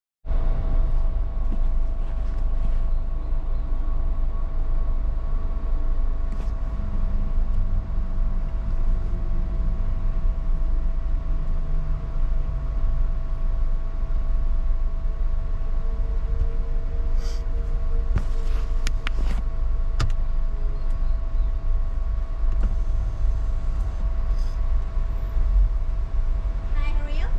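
Car engine idling, heard from inside the cabin as a steady low rumble, with a faint steady hum over it and a few sharp clicks a bit past the middle.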